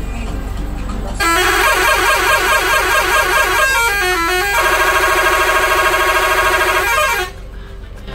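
Bus horn heard from inside the bus, sounding loudly for about six seconds. It starts about a second in with a rapidly wavering tone, slides down, holds one steady note, and ends with a falling glide.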